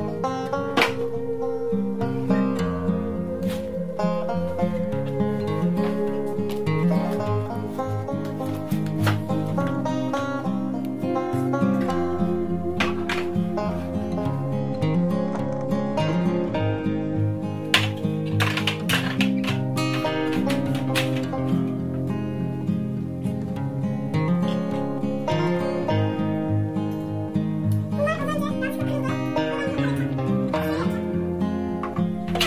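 Upbeat instrumental background music led by plucked acoustic guitar, playing steadily throughout.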